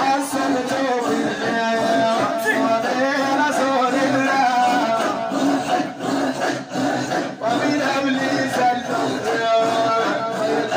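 A group of men chanting together in a Sufi 'imara (hadra dhikr), many voices overlapping in a measured rhythm.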